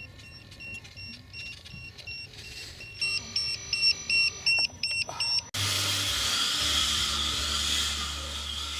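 Repeated electronic beeping from an RC floatplane's onboard electronics, about three short beeps a second, getting louder about three seconds in. It cuts off abruptly a little past the halfway point, replaced by a steady hiss with a low hum.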